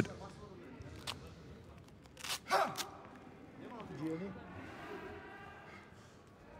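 Faint voices in a large hall, with a click about a second in and a short sharp noise about two and a half seconds in.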